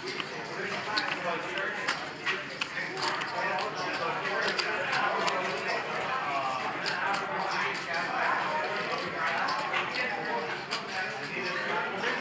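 Low background chatter of voices around a poker table, with frequent sharp clicks of clay poker chips being handled and shuffled.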